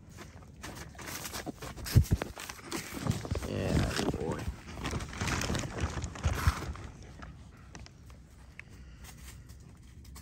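Close rustling and knocking from the camera being handled and moved about, with a short murmured voice sound about four seconds in. It settles to a low background after about seven seconds.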